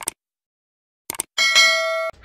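Subscribe-button animation sound effect: a pair of short clicks at the start and another pair about a second in, then a notification bell ding with several steady ringing tones that cuts off sharply at the end.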